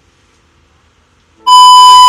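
Near silence, then about a second and a half in a loud, steady electronic beep at a single pitch cuts in abruptly.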